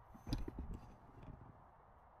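A few faint knocks from a galvanised metal sheep hurdle hung as a field gate as it is swung by hand, coming close together about half a second in.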